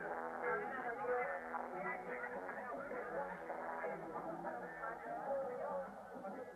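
Faint voices mixed with music, thin and muffled, as if coming from an old television or radio speaker.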